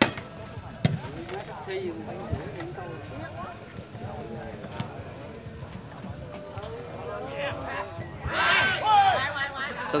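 A volleyball being struck by hand: a sharp smack on the jump serve, then further hits about one and two and a half seconds in. Underneath runs a steady chatter of onlookers' voices, which swells into louder calls near the end.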